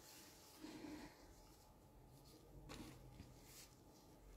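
Near silence: room tone with a few faint, brief handling sounds.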